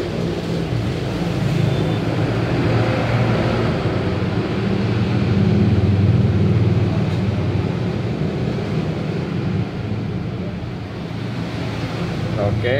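A steady low mechanical drone with a hum, swelling a little near the middle and easing slightly near the end.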